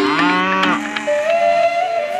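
A cow mooing: one arching call lasting under a second, then a higher, rising call. Steady held notes run beneath.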